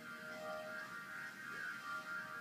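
Quiet background music playing in an exercise studio, made of slow, long-held notes that change pitch a few times.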